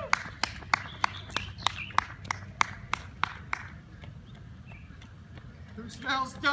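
Running shoes striking asphalt as a runner passes close by: quick, even footfalls about three a second, fading away over the first few seconds.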